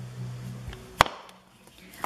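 A single sharp click about a second in, from a small hard case being handled. A faint low hum under it stops at about the same moment.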